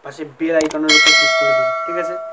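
A short click, then a single bell-chime sound effect rings out about a second in and fades away over about a second and a half.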